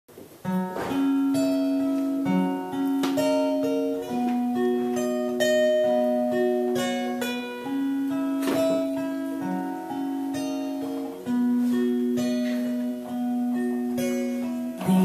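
Solo acoustic guitar playing a slow intro, single picked notes ringing on and overlapping one another, starting about half a second in.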